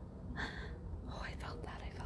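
A woman whispering a few breathy words under her breath, with no voiced sound.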